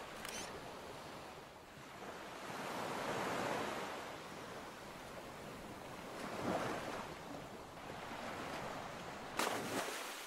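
Ocean surf: waves swelling and washing in and out several times, with no music.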